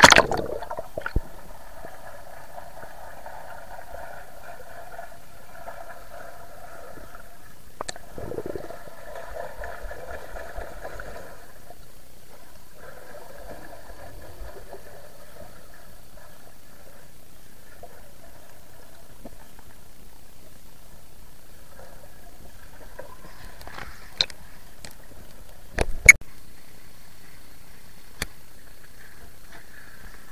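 Swimming pool water heard through a submerged camera: a splash as it goes under near the start, then muffled, hazy water noise and bubbling as a swimmer passes underwater, with a few sharp knocks, the loudest about three-quarters of the way through.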